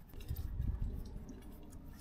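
Faint handling sounds of a rubber molding strip being forced through the holes of an ABS-plastic dash panel: light clicks and rubbing over an uneven low rumble.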